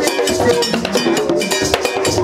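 Haitian Vodou ceremonial drumming: hand drums beaten in a fast, steady rhythm, with a bright metal bell struck over them.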